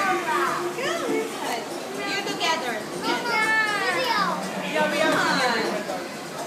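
A young child's excited, high-pitched voice: wordless squeals and exclamations that sweep up and down in pitch, several in a row.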